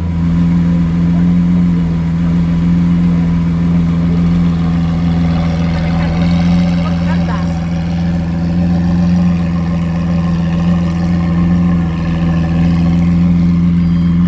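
Lamborghini Aventador's V12 engine, fitted with a Capristo exhaust, idling steadily at an even pitch.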